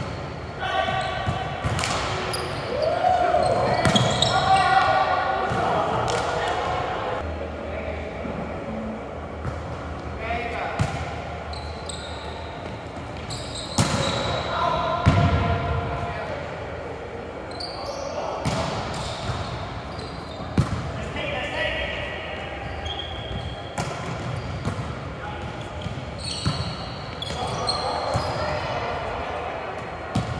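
Indoor volleyball being played: the ball is struck with sharp slaps and thuds at irregular intervals during rallies and bounces on the hardwood floor, echoing in a large hall. Players call out and shout between hits.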